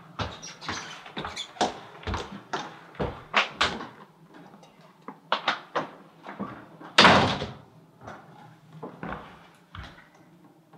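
A door being handled and opened, with a run of irregular knocks and clatter and one loud bang, like a slam, about seven seconds in.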